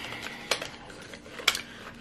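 A setting-spray box and bottle handled in the hands: light tapping and rubbing of the packaging, with two sharp clicks about a second apart.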